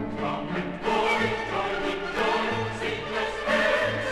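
Choir singing a Christmas carol with orchestral accompaniment.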